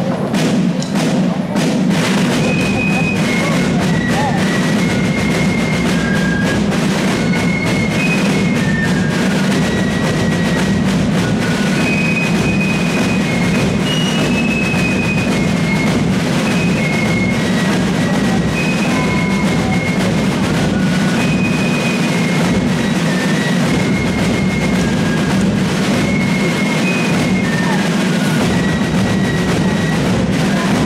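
Fife and drum corps playing: the drums strike in together right at the start, and about two seconds in the fifes join with a high, shrill melody over steady massed snare and bass drumming.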